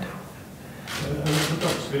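Short lull of room tone, then a man's voice starts asking a question about a second in, with hissy consonants.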